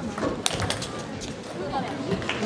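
Table tennis rally: the ball clicking sharply off the paddles and table several times in quick succession, with voices talking in the hall.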